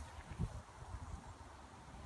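Faint fizzing of Coca-Cola foaming up out of the bottle's neck as Mentos set off the eruption, with a soft low thump about half a second in.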